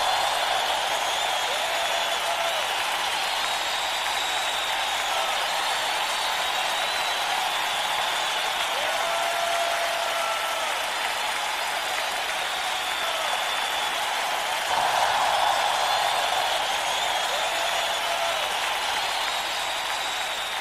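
A crowd applauding steadily, with a few voices calling out over it. The applause swells briefly about fifteen seconds in.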